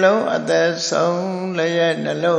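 A man's voice chanting Pali verses, holding the syllables on a steady, level pitch with short breaks between phrases.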